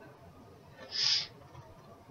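A short breath, a soft hiss lasting under half a second about a second in, taken in a pause while reading aloud.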